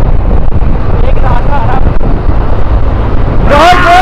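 Wind rushing over the microphone and a small motorcycle engine running at road speed, a steady low rumble. Near the end a person starts a loud, long shout.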